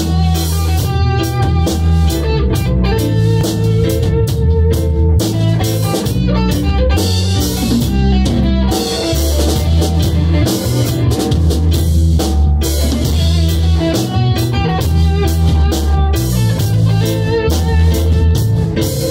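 A live band playing an instrumental passage without singing: electric guitar, bass guitar and drum kit together, with steady low bass notes under frequent drum and cymbal hits.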